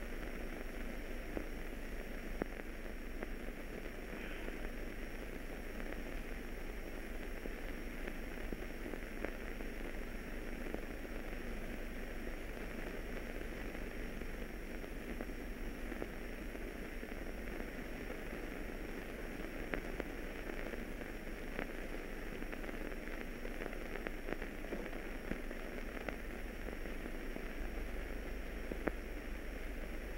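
Steady hiss and crackle of an old 1930s optical film soundtrack, with scattered faint clicks and no other sound standing out.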